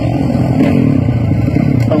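Freestyle motocross bike engine running loudly, its pitch wavering up and down with the throttle.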